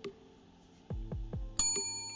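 A bright bell ding about one and a half seconds in, ringing on with a clear high tone: the notification-bell sound effect of a subscribe-button animation. Soft background music with falling notes starts just before it.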